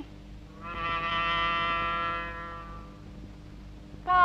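A single held brass note of steady pitch on a cartoon soundtrack. It swells in about a second in, then fades away before the end.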